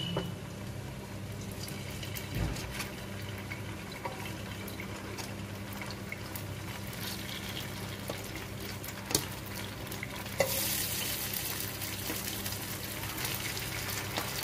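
Paneer cubes shallow-frying in oil in a pan, a steady sizzle, with a few sharp clicks as more cubes are put in with a steel spoon. The sizzle grows louder and brighter about ten seconds in.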